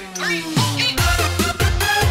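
Live dangdut band music with electric guitar and keyboard, in an instrumental stretch without singing. The drum beat drops out briefly and comes back in about half a second in, then runs on with a steady pulse.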